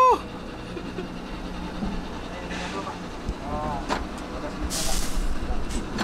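Cabin noise inside a moving Pindad Anoa 6x6 armoured personnel carrier: a steady low drone from its engine and drivetrain, with a couple of knocks around three to four seconds in and a short hiss near five seconds.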